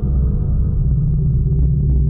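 Film background score: a loud, low, steady droning tone with a deep rumble underneath.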